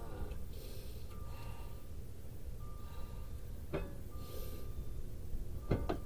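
A few short sharp clicks, one about two-thirds of the way in and two close together near the end, over a low steady rumble and a thin high tone that comes and goes.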